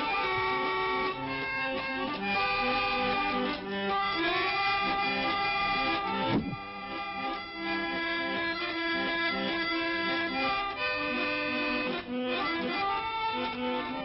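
Barrel organ (katarynka) music: a reedy, accordion-like melody of held notes, cranked backwards to work magic. A short falling swoop cuts through a little under halfway.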